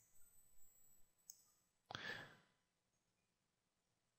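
Near silence, with a few faint computer-mouse clicks in the first second or so and one short breath at the microphone about two seconds in.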